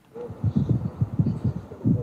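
Microphone handling noise: a quick, irregular run of low, muffled bumps and rubbing, starting suddenly after a silence, as a microphone is picked up and held.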